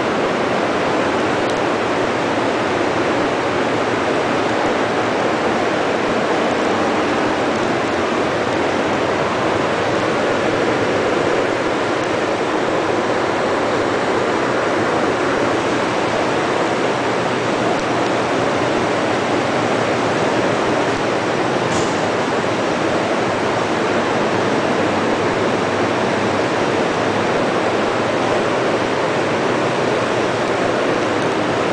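Steady, even noise of running factory machinery, with no distinct rhythm or tone and no change in level; a single faint tick about 22 seconds in.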